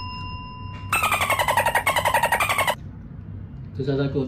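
A bell-like electronic ding rings on and fades out, then a synthesized sound effect of rapidly pulsing tones glides downward for about two seconds.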